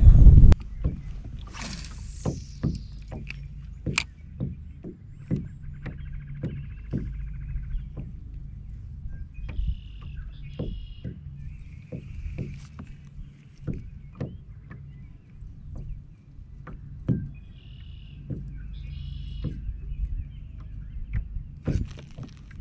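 Small waves lapping against a plastic fishing kayak's hull: irregular light knocks and slaps, roughly one a second, over a low rumble of water and wind. A loud rush of wind on the microphone cuts off about half a second in.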